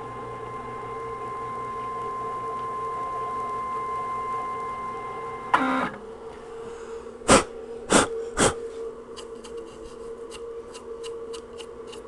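CNC router's stepper motors whining steadily as the gantry is jogged, growing slowly louder for about five seconds and then stopping with a short clatter. Three sharp knocks follow, then a run of light clicks, over a steady low hum.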